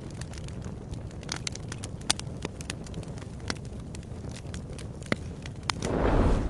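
Fire sound effect: a steady low rumble of burning flames with sharp, irregular crackles and pops. A louder swell starts building just before the end.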